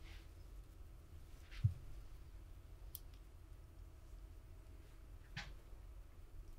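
Quiet room tone with a few faint, soft taps and brushing noises as a LEIA Ultraflesh makeup blender is pressed and patted against the cheek. One brief low thump comes about one and a half seconds in.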